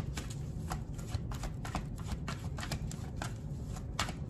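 A deck of tarot cards being shuffled by hand: a quick, irregular run of soft card clicks and flicks.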